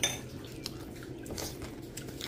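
A light clink of porcelain tableware at the start, followed by a few fainter clicks and soft handling noises.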